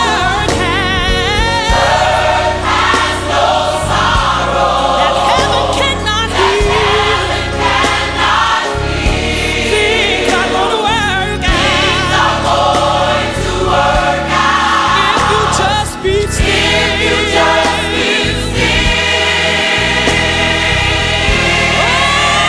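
Gospel choir singing over an instrumental backing with a steady bass, the voices wavering with vibrato and melodic runs.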